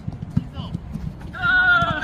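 A person's long held shout, one drawn-out vowel starting about a second and a half in, over steady low rumbling or thumping, with a single sharp knock shortly after the start.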